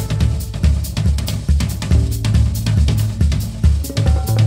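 Background music: a drum-kit groove with a steady beat of bass drum, snare and hi-hat, and little melody.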